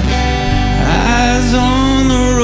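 Man singing a song live while playing an acoustic guitar, with long held notes over the strummed chords.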